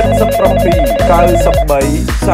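Electronic telephone ring: a rapid warbling trill that rings for about a second and a half and then stops, over a low music bed.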